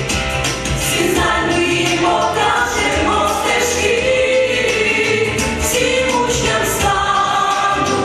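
A vocal ensemble singing a song together, several voices holding long notes.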